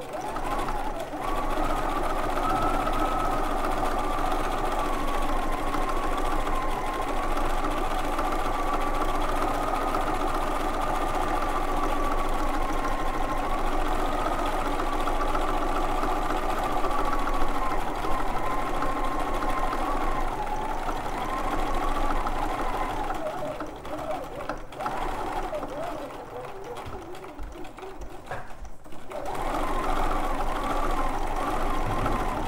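Bernina domestic sewing machine stitching at a steady high speed for free-motion quilting, its motor whine wavering slightly in pitch. For the last several seconds it slows and runs unevenly with brief pauses, then picks up again right at the end.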